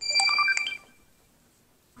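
A short electronic jingle of quick beeping tones at changing pitches over a held high tone, lasting under a second and then stopping.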